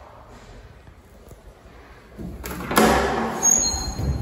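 Landing door of a 1978 ZREMB passenger lift being unlatched and opened: quiet at first, then a click and a loud metallic clunk with a ringing tail a little under three seconds in, followed by a brief high squeak.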